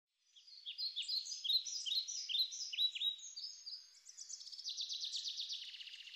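A bird singing: a run of quick downward-sweeping chirps, then a fast trill from about four seconds in.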